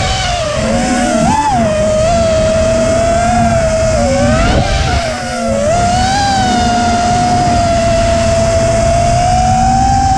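5-inch FPV racing quad's brushless motors and propellers whining, the pitch rising and falling with the throttle and dipping about halfway through before holding steady, with wind rumble on the onboard camera's microphone.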